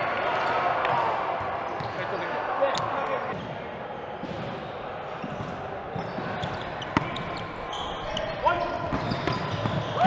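Volleyball rally in a large gym: a background murmur of players' voices from the courts, with a couple of sharp ball hits, one about three seconds in and another about seven seconds in.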